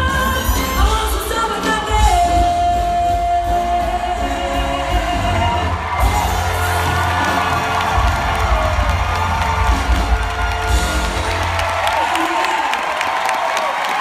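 Live band with a female singer finishing a big-band style song, with a long held note about two seconds in. From about halfway the crowd cheers and whoops over the music, and the band drops out near the end, leaving the cheering.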